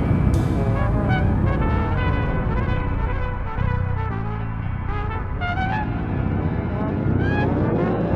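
A small ensemble plays: trumpet over electric guitar, drum kit and electric bass. Many pitches slide downward through the first half and climb back up in the second half.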